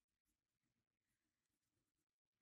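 Near silence, with no audible sound.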